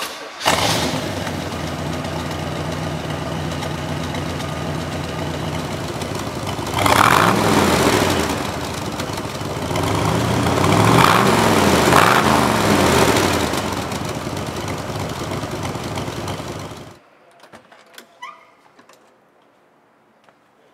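1966 Corvette's L79 327 V8 with a four-barrel Holley carburetor starting up almost at once, then idling through its side-mounted exhaust. It is revved once about seven seconds in and twice more a few seconds later, then shut off suddenly near the end, leaving only a few faint clicks.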